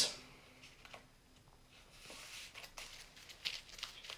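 Faint rustling and light taps of a stack of paper flashcards being shuffled by hand, with a soft swish about two seconds in.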